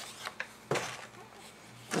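Paper and card being handled on a craft table: a few faint light clicks, then one sharper tap just under a second in, over a low hiss.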